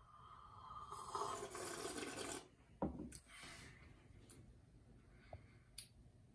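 A quiet sip of coffee slurped from a small ceramic cup, an airy hiss lasting about two seconds, followed by a single light knock as the cup is set down on the wooden counter.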